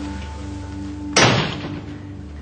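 Background music of held, sustained tones, with one loud sudden thump about a second in that fades quickly.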